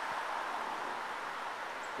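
Steady, even rush of flowing river water.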